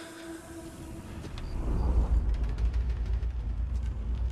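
A held note dies away about a second in, then a deep low rumble swells up and stays loud, with faint crackling clicks over it: a dramatic low rumble in a stage show's soundtrack.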